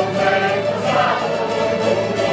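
A small group of voices singing a song together, accompanied by strummed cavaquinhos and violas.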